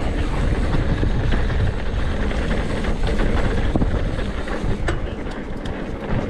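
Mountain bike ridden over a dirt trail, picked up by a bar- or body-mounted camera: steady rumble of knobby tyres on dirt, the bike rattling over the rough ground, with a few sharp clicks and knocks about five seconds in.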